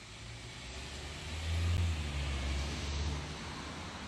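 A road vehicle passing by: a low rumble that swells, is loudest about two seconds in, then fades.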